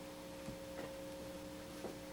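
Faint, steady electrical hum made of two low tones, with a couple of soft clicks.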